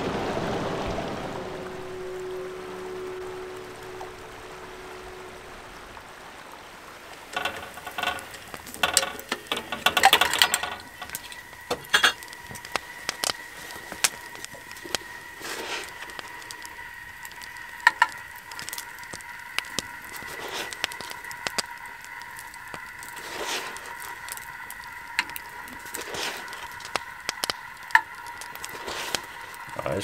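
Rushing stream water that fades out over the first few seconds, then a small wood fire crackling and popping under a metal kettle, in irregular sharp snaps. A faint steady high tone runs underneath from about a third of the way in.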